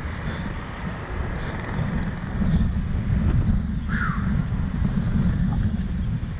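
Wind buffeting the microphone of a camera mounted on a Slingshot reverse-bungee capsule as the capsule swings and bounces on its cords. The low rumble grows louder about halfway through, and a brief higher squeak comes about four seconds in.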